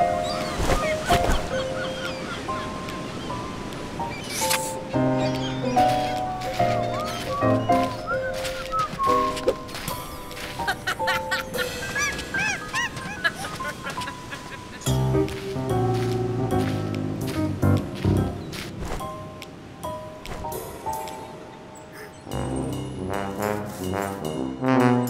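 Cartoon soundtrack music: quick runs of bouncy pitched notes, cut with sharp clicks and knocks. Rising and falling pitch glides come in about halfway through.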